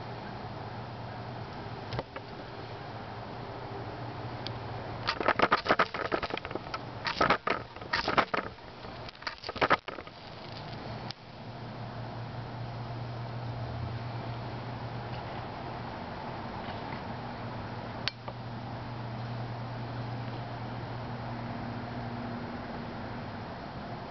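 Knife spine scraped down a ferrocerium fire steel in three quick bursts of scrapes, about five to ten seconds in, throwing sparks onto a pile of wood shavings that catch fire.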